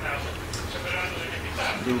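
A man's drawn-out, wavering hesitation sound while he thinks before answering, over a steady low hum.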